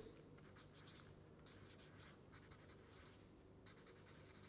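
Felt-tip marker writing on paper: a run of short, faint scratchy strokes as letters are written out.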